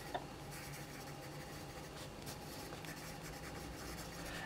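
Graphite pencil writing words by hand on thick dot-grid journal paper (Archer and Olive): faint, irregular scratching strokes of the lead across the page.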